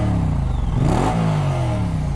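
Moto Guzzi V100 Mandello's 1042 cc 90-degree V-twin revved at a standstill: the revs fall away, climb to a peak about a second in, then drop again. It is slow to rev up and slow to come back down.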